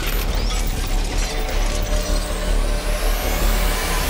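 Logo-animation sound design: mechanical ratcheting and clicking effects over a deep, steady bass bed, with a rising sweep building through the second half.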